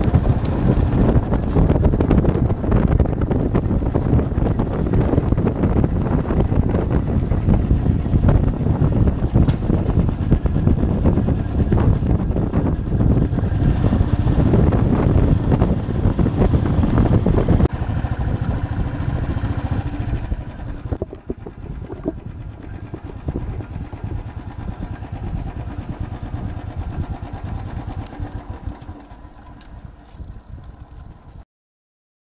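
Motorcycle engine running while the bike is ridden along a bumpy dirt lane, heard from the rider's seat, with a steady rumble and a constant patter of small knocks and rattles. The sound gets quieter about two-thirds of the way through and quieter again a few seconds later.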